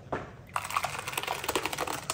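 Thick blended tomato salsa pouring out of a blender jar and splattering into a glass dish: a dense, wet crackle of many small splats, starting about half a second in.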